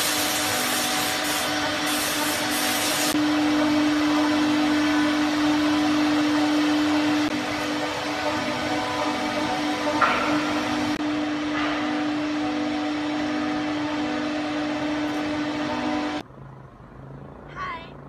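Workshop machinery running: a loud, steady hum with a hiss over it, with a short sharp noise about ten seconds in. It cuts off suddenly a couple of seconds before the end.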